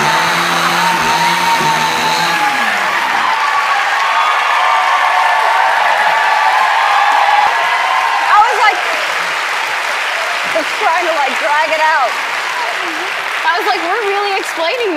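A chainsaw's engine runs for the first two to three seconds under a studio audience's screams and applause. The screaming and applause go on throughout, with laughter near the end.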